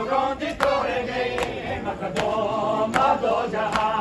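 A group of men chanting a noha together, kept in time by sharp, even strikes of hands on chests (matam), about one every 0.8 seconds.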